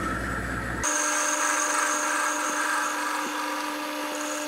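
Metal lathe running with the chuck spinning as the cutting tool faces the end of a steel bar. A steady machine hum gives way abruptly, about a second in, to a thinner steady whine with a faint high tone.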